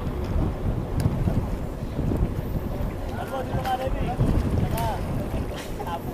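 Wind buffeting the microphone, an uneven low rumble throughout, with faint voices calling out briefly around the middle.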